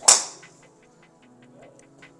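A golf club striking a ball: one sharp, loud crack right at the start, ringing off over about a third of a second.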